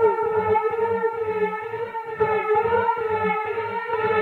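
Techno music from a DJ mix: a held, slightly wavering synth tone with a stack of overtones, over a steady pulsing kick drum.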